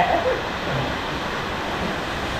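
Steady rushing of a waterfall, heard as an even noise.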